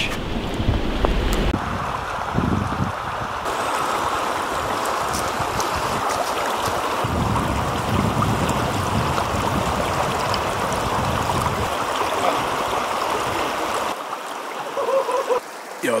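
Rushing river water over rocks: a steady hiss of flowing water that drops away near the end.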